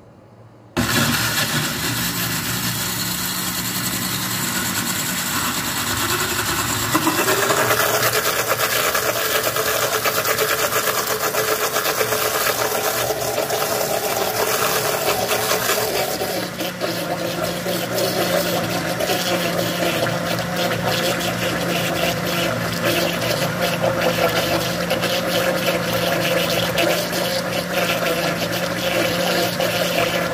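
Countertop blender motor starting about a second in and running continuously, its blade churning a thick smoothie. The sound shifts about seven seconds in, as the mixture turns over, and again around sixteen seconds, when milk is poured in through the lid.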